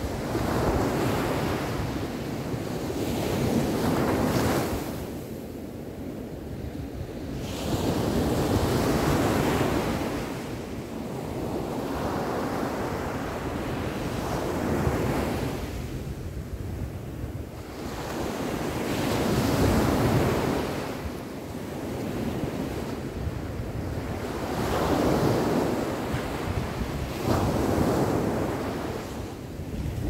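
Ocean surf breaking on a sandy beach, each wave swelling and washing out every four to six seconds, with wind rumbling on the microphone.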